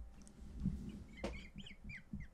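Faint, breathy, squeaky laughter in short bursts, over a low steady hum.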